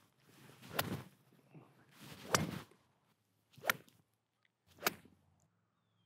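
Four separate swishing whooshes, each with a sharp crack at its peak, about a second apart; the first two are longer swells, the last two are short.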